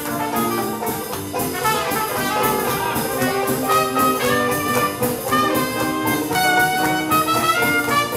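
Live traditional jazz band playing instrumentally, the trumpet playing the lead over sousaphone, banjo and drums.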